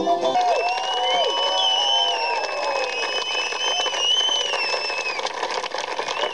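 A crowd of diners applauding and cheering, with a long high whistle held over the clapping. Folk fiddle music cuts off about half a second in.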